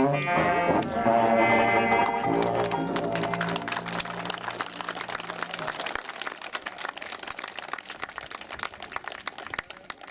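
A small traditional jazz band with tuba and banjo plays its closing notes and holds a final chord that stops about six seconds in. Audience applause starts under the chord and carries on after it, thinning out toward the end.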